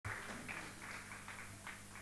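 Quiet stage sound before a song starts: a steady low electrical hum from the sound system under faint, irregular rustling noises.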